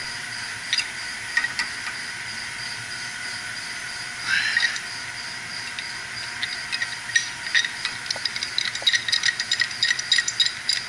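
Pipe wrench clicking and scraping on a valve, with sharp metal taps that come fast in the last few seconds. Behind it runs a steady hiss with a faint high whine.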